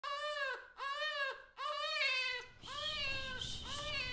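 A baby crying: a string of short wailing cries, each rising and falling in pitch, about six in four seconds.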